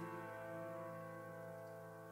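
A piano chord held and ringing out, slowly fading, in a quiet gap of a slow piano-led rock ballad cover.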